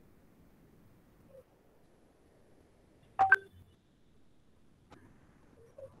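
Near silence on a video call, broken about three seconds in by one short, loud blip of a clear tone, with a faint click a little under two seconds later.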